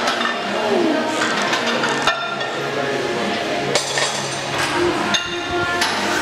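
A few sharp metallic clinks of a loaded barbell and its weight plates in a squat rack, over crowd chatter and background music.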